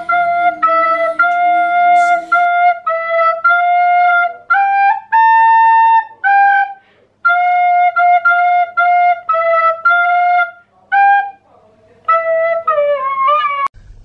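A plastic recorder plays a simple tune in short notes, mostly repeated on one pitch, rising to two higher held notes about five seconds in. Near the end the notes slide down in pitch.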